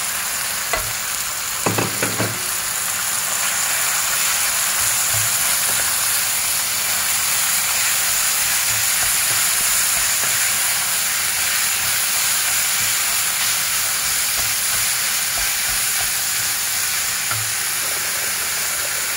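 Minced meat and diced carrot sizzling steadily in a frying pan as they are stirred with a wooden spatula, with a few sharp knocks about two seconds in.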